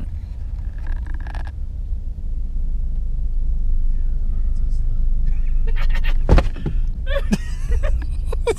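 Steady low road and engine rumble heard from inside a car's cabin as it drives slowly, growing a little louder partway through. A single sharp thump about six seconds in.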